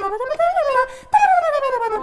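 A woman singing a wordless line that slides up and down in pitch. Just past a second in, after a short break, she starts a long downward glide.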